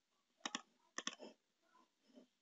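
Faint computer mouse clicks: a quick pair about half a second in, then a group of three about a second in.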